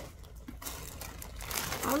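Plastic bag rustling and crinkling as it is handled and opened, starting about half a second in and growing louder.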